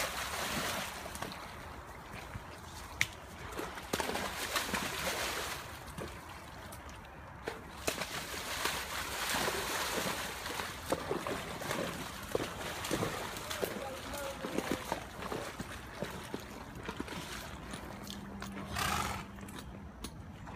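A horse's hooves splashing and sloshing in shallow creek water, with irregular splashes throughout as it paws and steps about.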